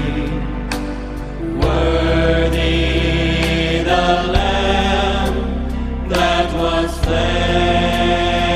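Mixed gospel vocal group of men and women singing long-held chords in close harmony, the chord changing every second or two.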